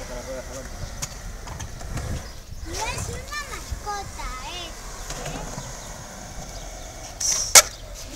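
Skateboard wheels rolling over a concrete skate bowl, a low steady rumble. Near the end comes a single sharp clack, the loudest sound.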